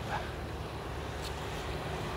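Steady low rumble of a 2008 Shelby GT500's supercharged 5.4-litre V8 idling.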